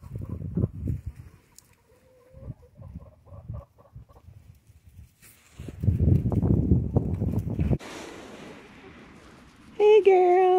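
Chickens clucking softly over low rumbling noise on the microphone, with a loud drawn-out chicken call starting just before the end.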